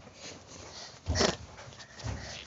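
A short fart noise about a second in, one brief raspy burst.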